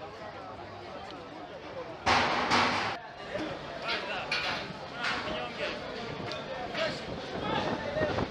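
People talking and chattering, with one loud burst of noise lasting under a second about two seconds in.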